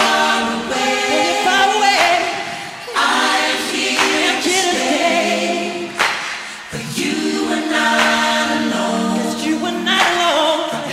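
Several voices singing together in harmony, choir-like, in long held phrases with little instrumental backing, a new phrase starting about three seconds in and again near seven seconds.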